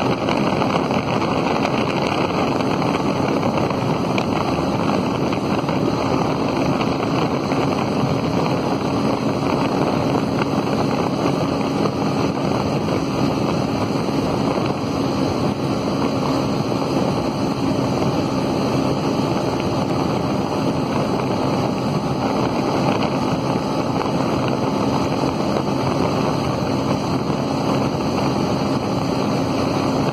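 Bajaj Avenger 180's single-cylinder engine running steadily at high speed, around 110 km/h near its top speed, buried in heavy wind rush over the microphone.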